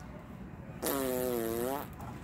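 A single fart sound, about a second long, starting just under a second in. It is buzzy, with a steady pitch that dips slightly and then rises again.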